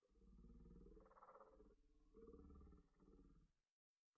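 Faint, raspy breathing of a winded hiker at high altitude: two long, rough breaths, each about a second and a half.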